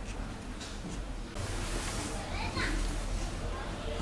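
Quiet room noise with a steady low hum and faint distant voices; a soft hiss rises about a second and a half in.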